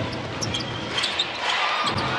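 A basketball bouncing several times on a hardwood court during live play, over the steady noise of a large hall.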